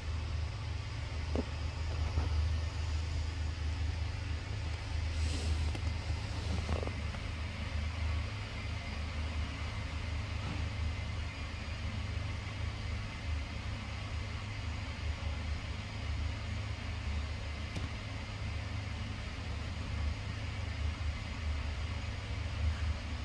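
Helicopter with its main rotor turning on a helipad, heard as a steady, fluttering low rumble, muffled through window glass.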